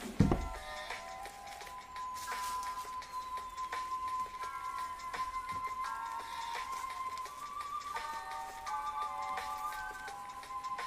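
Background music with soft, sustained synth-like tones that hold and step between notes. A single low thump sounds just after the start.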